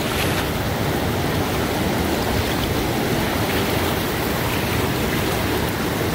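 Steady, even rush of a fast river running over rapids.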